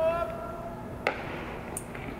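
A held shout, like a player's call on the field, at the start. About a second in comes a single sharp smack: the baseball landing in the pitcher's leather glove on the catcher's return throw.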